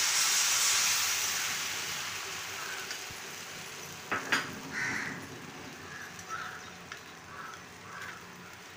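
Besan batter hitting hot tempering oil in a frying pan: a loud sizzle that fades gradually over several seconds as the batter settles. A couple of sharp clicks come about four seconds in.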